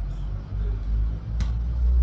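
Wind buffeting the microphone: a loud low rumble that rises and falls unevenly, with one sharp click about one and a half seconds in.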